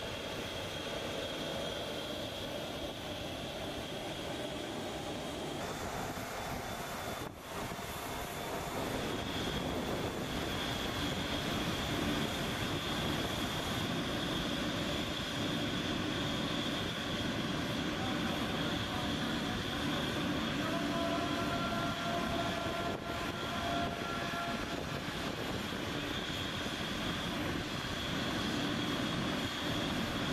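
Steady jet aircraft noise on an airfield ramp: a broad rumble with a thin, steady high-pitched whine over it, briefly interrupted by a couple of cuts.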